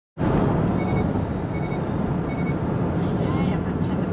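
Steady low rumble of a car's engine and tyres on the road, heard from inside the cabin while driving. Three faint short high beeps sound in the first half.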